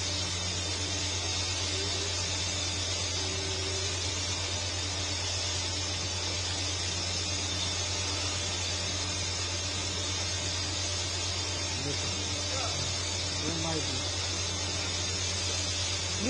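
Steady outdoor night ambience: a constant low hum under a high hiss, with faint distant voices once or twice near the end.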